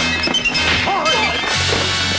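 Kung fu film soundtrack music with fight sound effects: a few sharp hits in the first half-second over the music.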